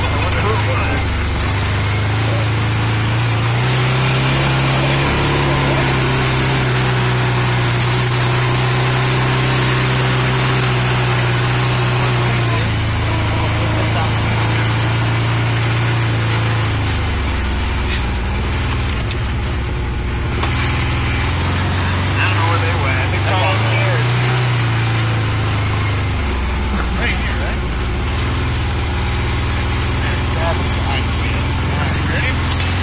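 Engine of an off-road vehicle running as it drives over rough ground. Its note climbs about four seconds in, drops back about halfway through, and briefly climbs again near the end.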